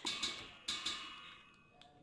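Crinkling and a few light clicks from a plastic-and-paper spice packet as it is picked up and handled, dying down in the second half.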